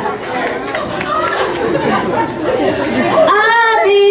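Crowd chatter, many voices talking at once in a large hall. Near the end, one woman's voice starts singing held notes into a microphone over it.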